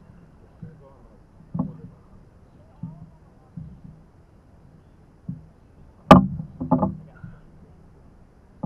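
Irregular hollow knocks of paddles and gear against a canoe's hull while paddling. There are about half a dozen knocks, the loudest about six seconds in, followed by two quicker ones.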